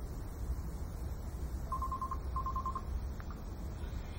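Wind rumbling on the microphone, with two quick runs of short, high electronic beeps, about five in each, around the middle, and two faint clicks soon after.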